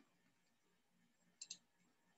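Near silence with a few faint, sharp clicks: one at the start and a quick double click about one and a half seconds in.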